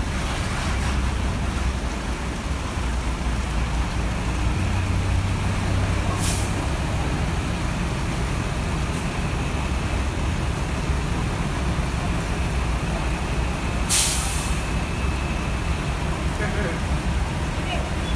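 Intercity coach bus's diesel engine rumbling as it pulls away across the terminal lot, with two short sharp air-brake hisses, about six seconds in and again about fourteen seconds in.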